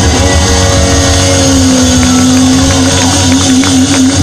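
Live blues band playing loudly, ending on one long held note that begins to waver near the end, over drums and bass.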